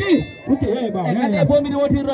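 A man's voice over a microphone and PA, chanting a short phrase again and again in a rapper's call to the crowd. A brief high metallic ding rings out right at the start and fades within half a second.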